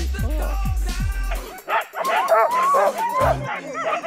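Sled dogs yelping and whining over background music. Their overlapping high calls rise and fall, and grow into a chorus about two seconds in.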